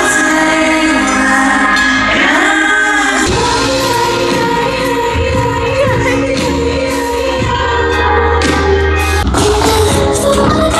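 Live pop music with a woman singing, heard loud over a large festival sound system from within the crowd.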